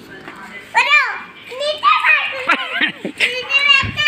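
A young child's high-pitched voice, calling and babbling in several short bursts, with other voices mixed in.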